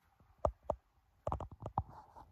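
A few soft clicks and taps: two single ones about half a second in, then a quick run of five or six around a second and a half.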